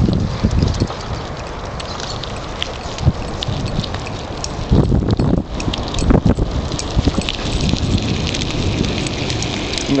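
Bicycle coasting over rough asphalt while a dog tows it on a leash. There is steady rolling noise with a low rumble and scattered light clicks and rattles.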